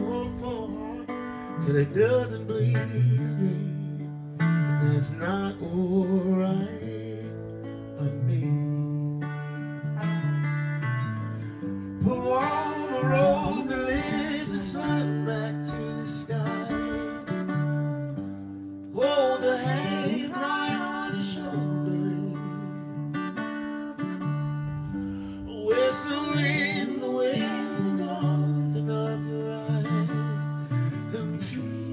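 A small band playing a soul song live: a male lead voice singing in phrases, with acoustic guitar, electric bass and light drums underneath.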